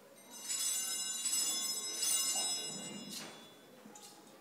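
Small altar bells shaken in several rings as the chalice is elevated, a bright, high jingling that fades out near the end: the signal of the elevation at the consecration of the Mass.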